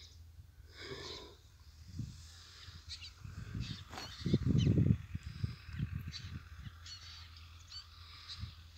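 Birds calling around farmland: scattered short high chirps and a longer call about a second in. A loud low rumble on the microphone comes near the middle, over a steady low hum.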